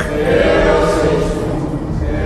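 Sustained choral music: many voices holding a chord, swelling louder about half a second in.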